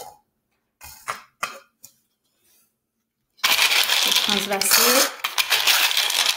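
A few light clicks of plastic scoops being handled, then from about three and a half seconds in a dense rattle of small plastic beads being scooped and poured.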